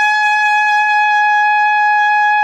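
Silver-plated Carol Brass Andrea Giuffredi model trumpet holding one long high note, steady in pitch and loudness.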